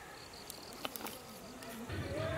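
An insect chirping in a faint, evenly pulsing high tone, with a couple of sharp crackles from the wood fire a little under a second in.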